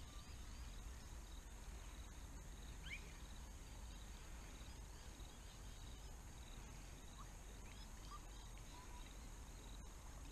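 Faint creekside ambience: a steady high insect drone with small bird chirps scattered through it, a few short rising calls about three seconds in and again near the end, over a low rumble.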